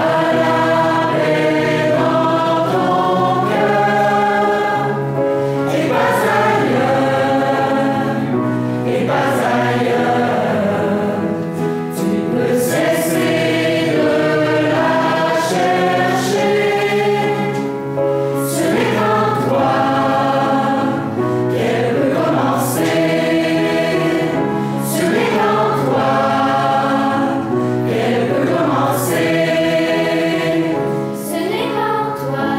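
Mixed choir of women's, girls' and men's voices singing a song in held phrases, accompanied by piano.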